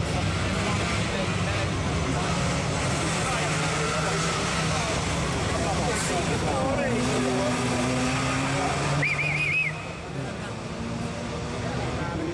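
A rally car's engine running hard and changing pitch as the car passes and pulls away, with a brief warbling high tone about nine seconds in, after which the sound drops for a moment.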